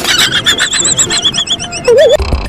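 Horse whinny sound effect: one long, high, wavering call that falls slightly in pitch, over a steady beat.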